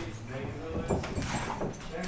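A dog whining in short cries, alongside a young child's voice.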